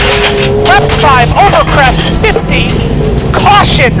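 A Subaru WRX STI rally car's turbocharged flat-four engine running hard and accelerating on a gravel road, heard from inside the cabin. A voice talks over it.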